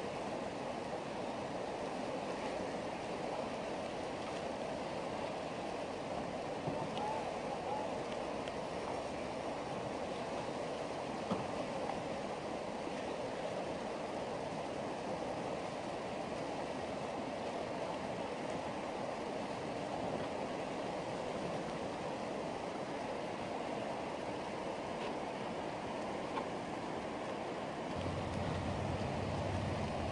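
Whitewater rapids rushing in a steady, unbroken wash of river water, with a low hum joining near the end.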